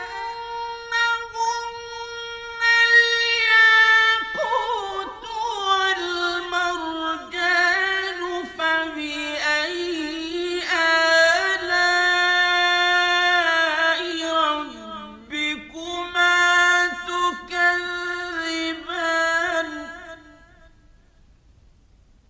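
A solo voice reciting the Quran in a melodic, chanted style. It holds one long note for about four seconds, drops lower into a long phrase of ornamented turns and slides, and stops shortly before the end.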